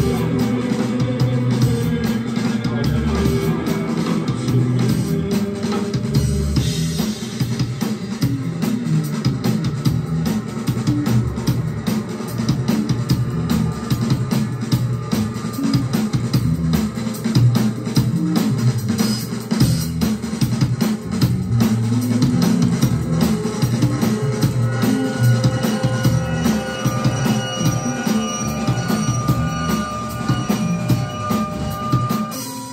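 Live band playing: drum kit and electric guitars.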